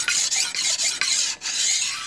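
Large steel knife blade stroked quickly back and forth on a wet Diamond-brand (Tra Phet) grade A sharpening stone, a gritty scraping in several strokes with brief breaks between them. The stone is cutting the steel readily.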